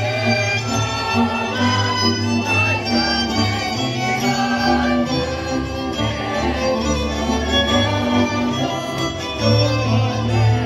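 Lively Hungarian folk dance music led by fiddles over a steady bowed-string bass line, playing continuously.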